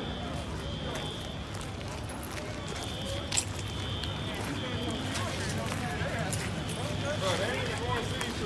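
Indistinct voices over steady outdoor background noise, with a faint high tone coming and going and two sharp clicks, about three and six seconds in.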